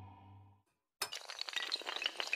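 Intro sound effect: a held low note fades away, then after a short gap a rapid, dense clatter of many small sharp clicks and clinks starts about a second in, like pieces of glass or toppling tiles.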